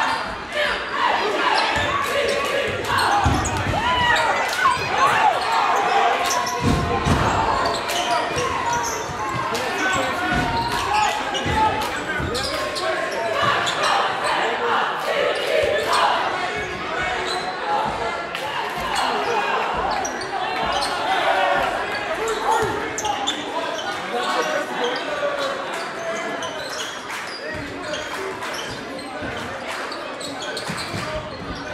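Basketball dribbled on a hardwood gym floor, with repeated bounces, over the continuous chatter and shouts of a crowd echoing in a large gymnasium.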